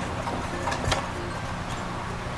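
Claw machine being played: a steady low hum with faint machine music, and a couple of light clicks near the middle.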